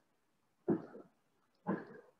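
Two short, faint vocal hesitation sounds from a man, about a second apart.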